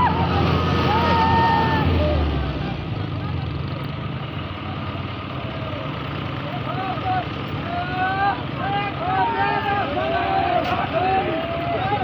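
Diesel tractor engines running hard, loudest in the first two seconds and then fading under a crowd of men shouting and cheering. The yells grow busier toward the end.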